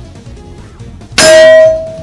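Magnum buckshot striking a steel silhouette target at close range: one very loud clang a little over a second in, then the plate rings on at a single steady pitch and slowly fades.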